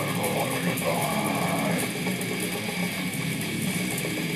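Electric guitar playing a fast, rapidly picked death-metal riff, along with the song's recording playing from laptop speakers.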